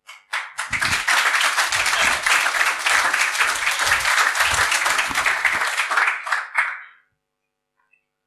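Audience applauding: dense clapping that swells within the first second, holds steady for about five seconds and dies away around seven seconds in.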